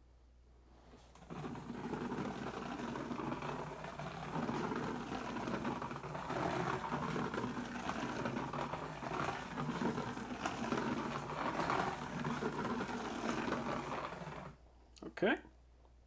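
A handheld plastic wall scanner rubbing and scraping against textured drywall as it is moved around in circles to calibrate. The rubbing starts about a second in, runs steadily, and stops about a second and a half before the end.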